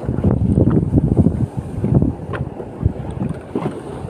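Wind buffeting the microphone over choppy sea water, an uneven low rumble that swells and dips in gusts.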